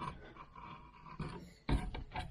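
A hand carving gouge scraping and cutting into cottonwood bark in short strokes, then a sharp knock near the end.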